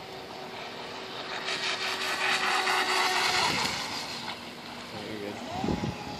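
Pro Boat Formula Fastech RC boat with a brushless motor and plastic Octura propeller running at speed across a pond: a whine and hiss of spray that builds about a second and a half in, is loudest for a couple of seconds, then fades as the boat moves away.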